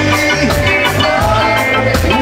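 Live reggae band playing with a steady beat, a pitched melody line carried over the rhythm.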